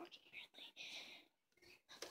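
Faint whispering, in short breathy bursts.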